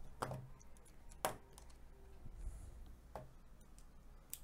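A few light, sharp clicks of small repair tools being handled, the loudest about a second in, over a faint low hum.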